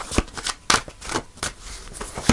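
A deck of tarot cards being hand-shuffled: a quick, uneven run of sharp card slaps and riffles, about four a second.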